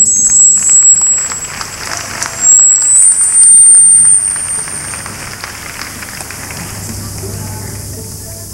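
Theatre audience applauding, with high whistling tones over the clapping in the first few seconds. The applause dies down to a low murmur about five seconds in.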